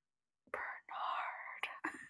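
Faint whispering that starts about half a second in, breathy and without voiced pitch.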